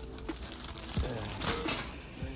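Plastic packaging of a bed pillow crinkling as it is handled. The rustling is loudest in a burst between about one and two seconds in.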